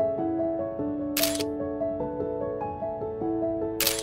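Two camera shutter clicks, about two and a half seconds apart, over soft instrumental background music.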